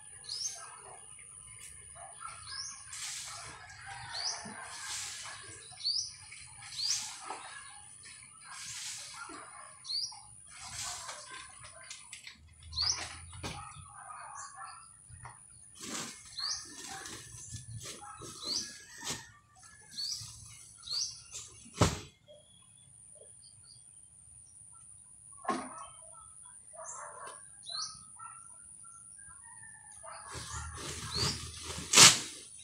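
A small bird repeating a short, high, upward-sliding chirp every second or two, with a steady high thin whine behind it. Intermittent rustling and scraping, and one sharp click about two-thirds of the way through.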